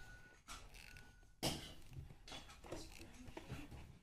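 Quiet handling noise as a cardboard product box is picked up and turned over: a few soft rustles and knocks, the loudest about one and a half seconds in.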